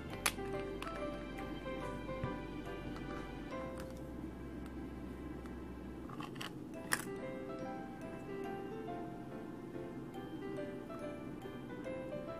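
Soft background music with a steady melody, over which a plastic scraper card scrapes polish across a metal nail-stamping plate: a sharp click about a quarter second in, and a short scrape followed by a click about six to seven seconds in.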